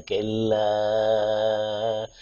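A man singing a Kannada folk song, holding one long steady note after a brief break at the start.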